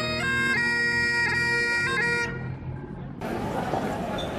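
Great Highland bagpipe playing a tune over its steady drones. The melody breaks off a little over two seconds in and the drones die away. About three seconds in, a sudden wash of outdoor noise takes over.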